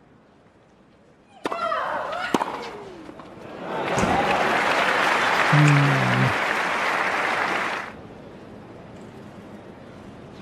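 A tennis ball struck with a player's loud shriek, and a second hit about a second later, followed by crowd applause for about four seconds that stops fairly suddenly.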